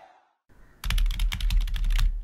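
A typing sound effect: a quick run of computer-keyboard keystrokes, about ten clicks a second with a low thump under them, starting about a second in.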